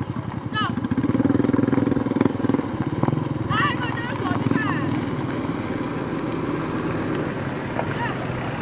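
A small engine running with a rapid low putter, loudest in the first few seconds and settling later. Brief high warbling sounds rise over it twice, about half a second in and again around four seconds.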